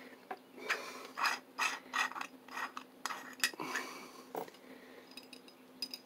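A small solid brass pocket compass being handled and worked open, giving irregular light clicks and rubbing, mostly in the first four seconds and then a few faint ticks.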